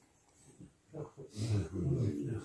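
A man's low, gravelly voice with no clear words, starting about a second in after a near-silent pause.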